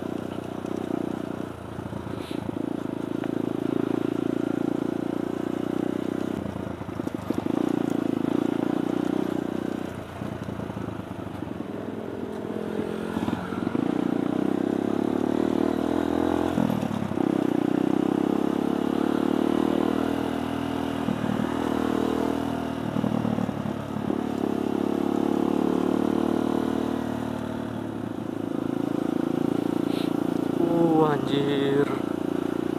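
Kawasaki D-Tracker 150 SE's single-cylinder four-stroke engine running under way, heard from the rider's position. Its note rises and falls several times as the throttle is opened and closed.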